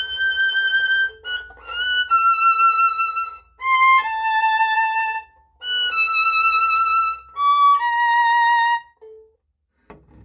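Solo violin playing a slow passage high on the fingerboard, each note held about a second with vibrato, in two phrases with a brief break about five and a half seconds in. It stops about nine seconds in.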